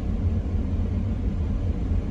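Steady low rumble of a car driving, its engine and tyre noise heard from inside the cabin.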